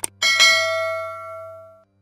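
Subscribe-button animation sound effect: a sharp mouse click at the start, then a bright notification-bell chime that rings and fades away over about a second and a half.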